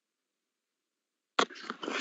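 Dead silence for over a second, then an abrupt click as the audio cuts back in and a voice starts speaking near the end.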